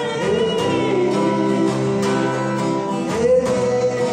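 A man singing while strumming an acoustic guitar. A long note is held from about three seconds in.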